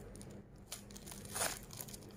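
Thin plastic wrapper of a packaged onigiri crinkling and tearing as its pull strip is drawn off, in small scattered crackles with a louder one about one and a half seconds in.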